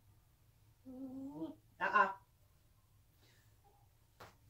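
A short hummed vocal sound, steady in pitch and falling at its end, then about half a second later a brief, louder and brighter vocal sound.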